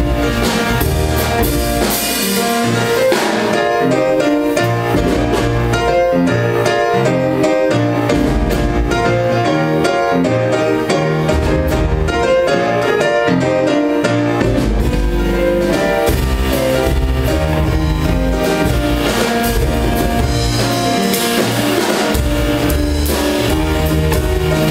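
Jazz piano trio playing live: grand piano chords and melody over a walking upright double bass and a drum kit with cymbals.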